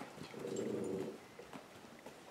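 A dog gives one soft, short vocal sound lasting under a second, a low whine or grumble.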